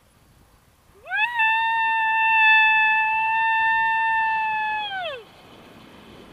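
A woman's long, high-pitched scream of excitement during a tandem paraglider flight: it swoops up about a second in, holds steady for about four seconds and drops away at the end.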